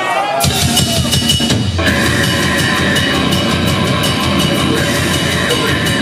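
A grindcore band playing live kicks into a song. A held vocal trails off, the drums and distorted bass and guitars crash in about half a second in, and the full band is going at a fast, dense pace from about two seconds.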